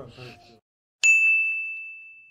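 A single clear, high ding that starts suddenly about a second in and rings out, fading slowly: a chime sound effect for the channel's intro title card.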